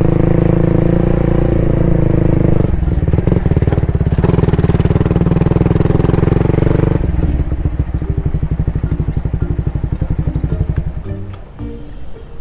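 Suzuki Raider Fi 150's single-cylinder engine running at low speed as the bike slows. In the second half its exhaust turns into distinct, evenly spaced pulses, which fade out near the end, with background music underneath.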